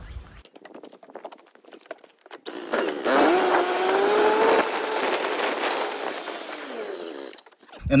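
A motor running for about five seconds, beginning about three seconds in, its pitch wavering up and down before it fades away near the end. It is preceded by a quiet stretch with a few faint clicks.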